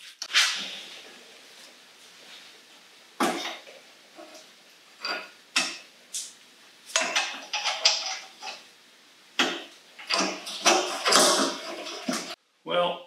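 Irregular metal clanks and clinks of hand tools and motorcycle parts being handled and fitted, with a sharp knock about half a second in and a busier run of clinks in the second half.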